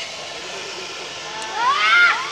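Several hand-held fire extinguishers discharging, a steady rushing hiss of spray. Near the end a raised voice rises sharply in pitch over it.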